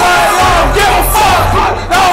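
Concert crowd yelling along to loud live rap music, with a deep bass line from the sound system that drops out briefly early on and returns.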